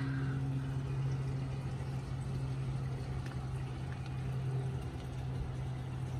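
A steady, low machine hum with no change in pitch, like a running motor.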